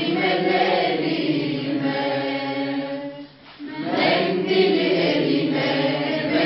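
A small mixed group of teenage boys and girls singing together without accompaniment. They hold one long note near the middle, break off briefly a little after three seconds in, then sing on.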